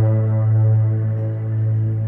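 Ambient background music: one steady low held note with softer held tones stacked above it.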